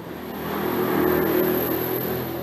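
A motor vehicle passing by: its engine and road noise swell to a peak about a second in, then slowly fade.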